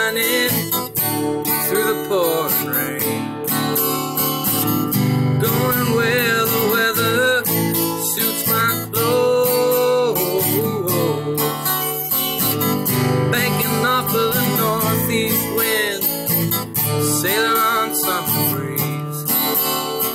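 Instrumental break in an acoustic folk-rock song cover: steadily strummed acoustic guitar with a lead melody that bends and wavers in pitch above it.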